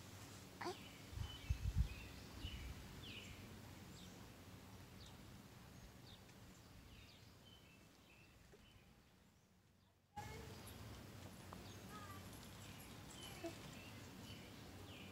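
Faint outdoor background with scattered short bird chirps. A few low bumps come in the first couple of seconds, and the background fades almost to nothing before coming back suddenly about ten seconds in.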